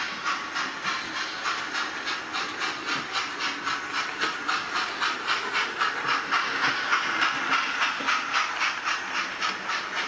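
Hornby TTS sound decoder in an 00 gauge model of the Coronation class locomotive City of Birmingham playing a steady steam chuff, about four beats a second, through the model's small speaker. The chuffing grows louder as the locomotive passes closest just past the middle, then eases off as the coaches follow.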